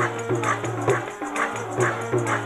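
Live music: a woman singing into a microphone over a steady low drone, with a percussion beat struck about twice a second.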